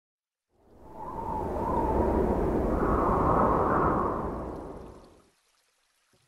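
A whooshing intro sound effect: one long rush of noise that builds up over about a second, holds, then fades out about five seconds in.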